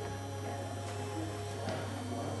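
A steady low hum with faint scattered sounds over it.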